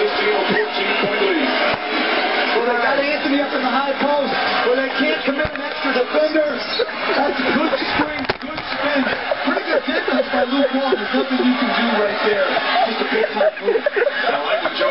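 Music with voices running through it throughout, loud and dense, with no words clear enough to make out.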